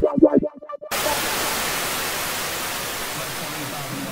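An electronic dance track with a pulsing beat runs for about the first second, then cuts off abruptly into a steady hiss of white noise, like static, that fades only slightly through the rest.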